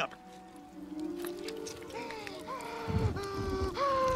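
Orchestral film score with held notes climbing step by step in pitch, joined about three seconds in by a deep rumble.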